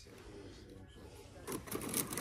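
Shop background with faint voices, and a louder voice coming in near the end.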